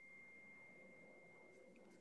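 Near silence, with a faint steady high-pitched tone.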